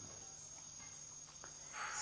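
A quiet pause with a faint, steady, high-pitched tone throughout, and a short breath near the end.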